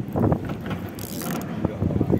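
Spinning reel being cranked to bring in a hooked fish, its gears giving a run of quick mechanical ticks, with a brief hiss about a second in.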